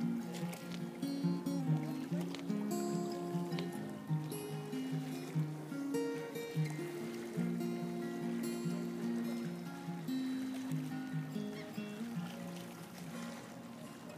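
Acoustic guitar being played, a steady run of picked notes and chords that dies down near the end.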